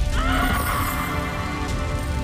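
A woman's anguished cry, a wail that rises in pitch just after the start, over dramatic background music.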